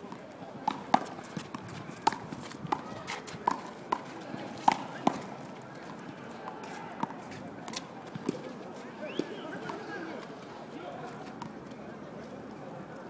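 A handball rally: sharp smacks of the small rubber ball off hands, the concrete wall and the court, coming quickly for the first five seconds, then a few scattered ones.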